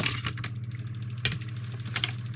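Clear plastic packaging crinkling and crackling as it is handled and pulled off, with a sharp click about a second and a quarter in.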